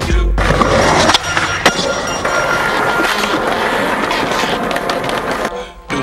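Skateboard wheels rolling on pavement, a steady rough rumble with a couple of sharp clacks between one and two seconds in, fading out shortly before the end, under music.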